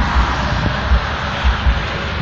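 Wind buffeting a phone microphone outdoors: a steady rushing noise with irregular low rumbles.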